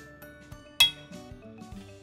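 Background music with a steady beat, and one sharp metallic clink a little under a second in as metal kitchen tongs knock against the dishes while lifting tomatoes out of the pan.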